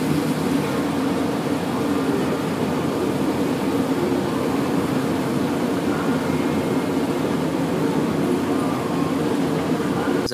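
Steady road noise heard inside a car driving on a rain-soaked highway: tyre noise on the wet road over a low engine drone.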